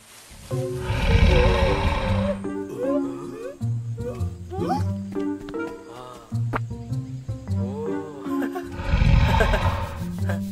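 A cartoon sauropod dinosaur gives two loud, breathy roars, one near the start and one near the end, over light background music.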